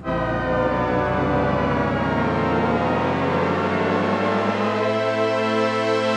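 SkyDust 3D software synthesizer sounding a held note from its SFX preset "1138", starting abruptly as a dense, out-of-tune cluster of wavering pitches. Over about five seconds the pitch envelope draws the detuned oscillators into tune, and the sound settles into a steady, clean chord.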